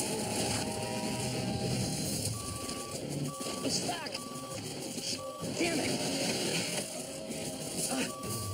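Censor bleeps: a steady mid-pitched tone in short pieces of uneven length, four in the middle and two more at the end, blanking out shouted words. A vehicle engine runs in the background.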